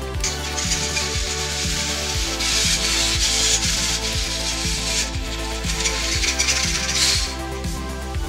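Background electronic music with a steady beat. Over it lies a loud hissing noise that sets in at the start, swells, drops back about five seconds in, and flares once more before cutting off near the end.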